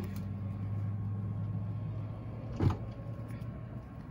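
Steady low machine hum, with one short, sharp sound that drops quickly in pitch about two-thirds of the way in.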